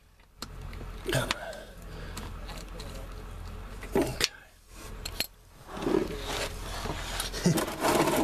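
A ratchet with a hex bit on the transmission pan drain plug, making irregular metallic clicks and clinks as the loosened plug is worked out. A steady low hum runs in the background.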